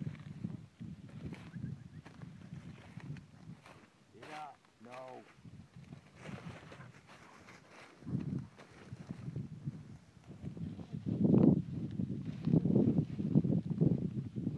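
Dry cornstalks and brush rustling and crunching as people and a dog push through them, with wind on the microphone, heaviest in the last few seconds. About four seconds in, a man's voice gives two short calls.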